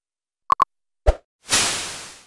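End-screen animation sound effects: two quick pitched blips, a single pop about a second in, then a sudden rushing noise that dies away over about a second.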